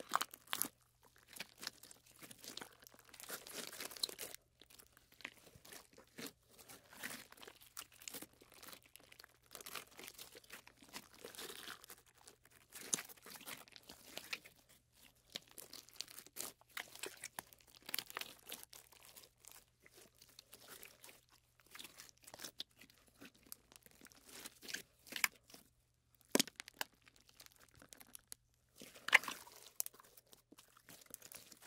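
Hands squeezing and working slime close to the microphone, making irregular sticky squishes and small pops in uneven clusters, the loudest one near the end.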